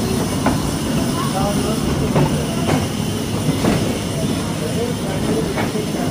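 Kids' amusement-park ride train running along its track: a steady low rumble with a few irregular sharp clacks from the wheels and cars.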